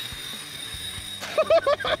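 About a second of low steady background, then a man's excited short exclamations and laughter.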